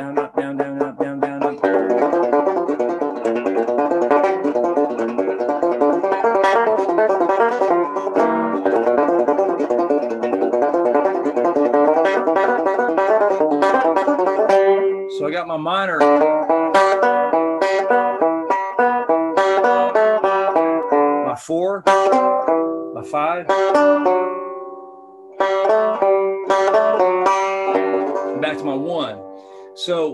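Six-string banjo flatpicked slowly in open G tuning, a repeating down-down-up pick pattern rolled across pairs of strings to play a tune. The notes drop away briefly about three-quarters of the way through, then pick up again and trail off near the end.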